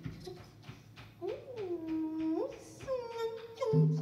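A solo voice singing a slow, unaccompanied melody with long sliding notes: it swoops up and down, then holds steady notes, after a quiet first second with only a few light taps. A lower tone joins near the end.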